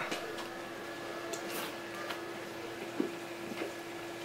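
Quiet room tone: a steady electrical hum with a few faint clicks, the clearest about three seconds in.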